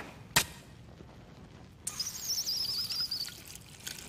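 Anime sound effects: a sharp click about half a second in, then a high, warbling shimmer over a hiss for about a second and a half in the middle.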